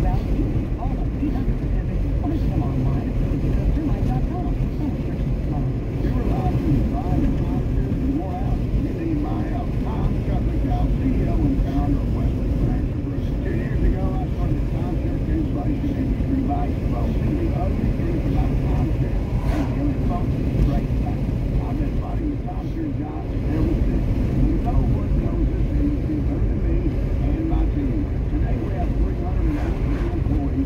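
Car cabin road noise while driving on a highway: a steady low rumble of tyres and engine, dipping briefly about two-thirds of the way through, with muffled voices underneath.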